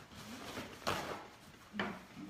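Paper rustling and handling noises as something is wrapped up in paper, with two short knocks about a second in and near the end.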